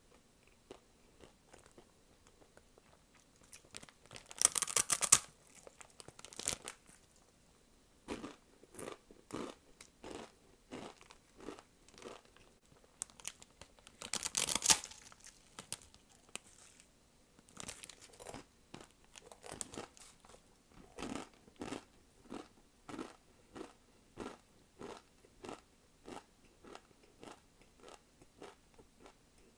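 A block of dry, uncooked instant noodles being bitten into and chewed. There are two loud, crisp bites, one about four seconds in and one near the middle, each followed by crunchy chewing that settles into a steady rhythm of about two crunches a second towards the end.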